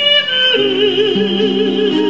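A soprano voice singing a Japanese children's song with a wide vibrato. About half a second in it steps down to a lower note and holds it, over sustained chords from the electronic keyboard she plays herself.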